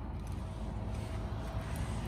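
Low background rumble, with a faint steady tone for about a second in the middle.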